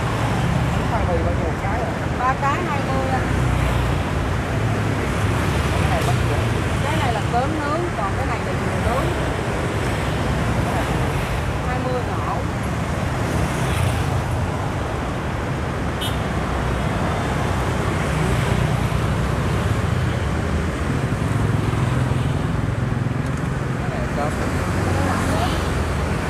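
Steady road traffic noise from motorbikes and other vehicles passing on a busy city street, with faint voices at times.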